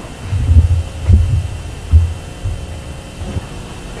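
A few dull low thuds, irregularly spaced and loudest under a second in, over a steady low hum.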